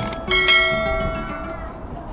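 A bell chime struck once, ringing and fading over about a second and a half, preceded by a short click: the click and notification-bell sound effect of an animated subscribe-button overlay.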